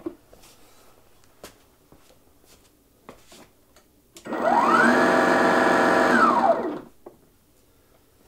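Ryobi dethatcher's brushless motor, running with no blade fitted and powered from a single 40V battery through a home-made adapter, spins up with a rising whine about halfway through, runs steadily for a couple of seconds, then winds down and stops. A few faint clicks come before it.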